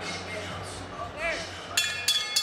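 Arena crowd murmur with faint voices, then near the end a boxing ring bell is struck and rings with a bright metallic tone: the bell sounded before the ring announcer gives the official result.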